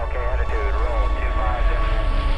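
A brief voice with sliding pitch, over a deep steady rumble and a thin sustained tone. The voice stops about one and a half seconds in.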